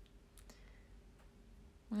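A few faint, sharp clicks in an otherwise quiet pause over a low steady hum, with a woman's voice starting right at the end.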